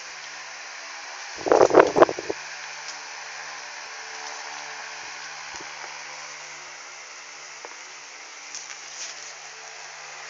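Steady mechanical hum, with one brief loud noise about one and a half seconds in.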